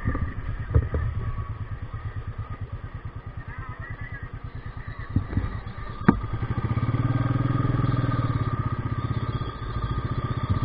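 Motorcycle engine running at low speed with an even pulsing beat, a sharp click about six seconds in, then louder and steadier as the bike picks up speed.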